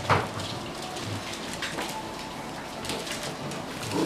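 Dogs' claws clicking lightly and irregularly on a hard tiled floor as several dogs walk about, with one short sharp sound right at the start.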